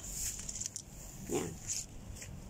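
A woman's single short spoken word, falling in pitch, about a second and a half in, over low steady outdoor background noise.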